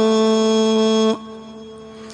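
A male voice chanting an Arabic devotional hymn holds the last syllable of a verse as one long, steady note. It stops about a second in, leaving only a faint lingering tone.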